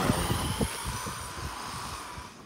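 Battery-powered RC truck taking off at full throttle: a high electric-motor whine over the hiss of its tyres on asphalt, loudest at launch and fading as it speeds away.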